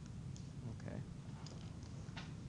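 A few faint, scattered clicks from a stylus tapping on a tablet PC screen as ink is written, over a steady low hum.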